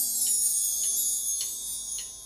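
Quiet instrumental intro to a Turkish folk song (türkü) played by a live band: held, sustained tones with a few light plucked notes about every half second.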